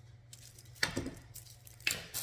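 Two sharp clicks, about a second apart, over faint rustling of handled plastic and foil craft pieces and a low steady hum.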